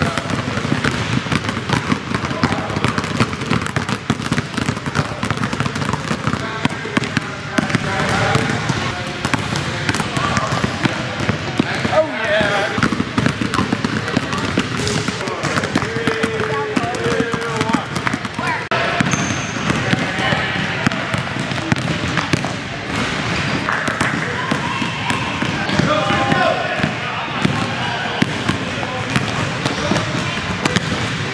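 Several basketballs being dribbled on a gym floor at once: a dense, continuous patter of overlapping bounces, with children's voices over it at times.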